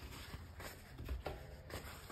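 Faint rustling and crinkling of a paper towel being handled and folded around a paintbrush to blot it dry.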